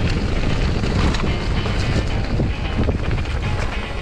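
Wind rushing over an action camera's microphone as a mountain bike rides down a trail: a dense, steady roar of noise that cuts in suddenly.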